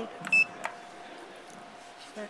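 Otis Gen2 lift car button pressed: one short, high beep acknowledging the press, followed by a click.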